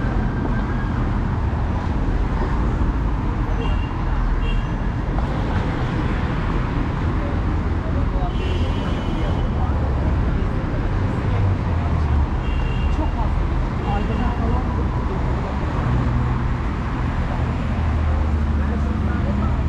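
Busy city street ambience: steady road traffic with cars passing close by, under the voices of passers-by.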